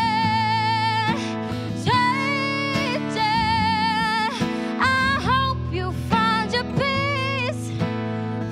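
A female singer sings long, held notes with vibrato over a strummed acoustic guitar.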